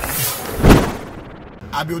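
Editing transition sound effect: a buzzy swish that swells to a peak a little under a second in and then fades, followed by a man starting to speak near the end.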